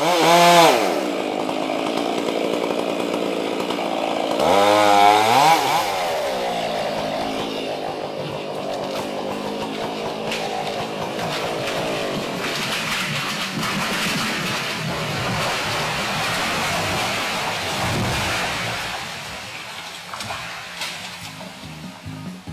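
Chainsaw felling timber: the engine revs up sharply at the start and again about five seconds in, then runs steadily under cutting load.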